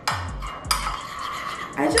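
Metal spoon stirring a liquid marinade in a bowl, scraping and clinking against the sides, with two sharper clinks in the first second.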